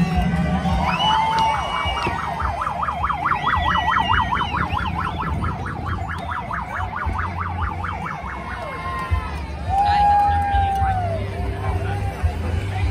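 Electronic vehicle siren in a fast yelp, its pitch warbling up and down several times a second for about five seconds, then stopping, over the sound of a crowd.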